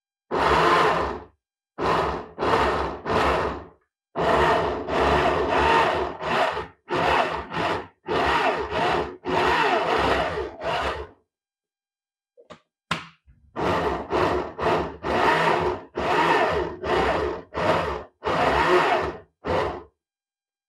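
A Fresh-brand countertop blender is pulsed in many short bursts of under a second each, chopping red onion and green vegetables, with a pause of about a second and a half just past the middle.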